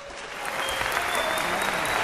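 Audience applauding, building up about half a second in as the last notes of an intro music sting die away.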